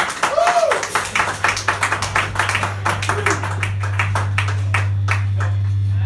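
Audience clapping and cheering at the end of a rock song, with a short whoop at the start; the clapping thins out near the end. A steady low hum from the band's gear sounds underneath from about a second in.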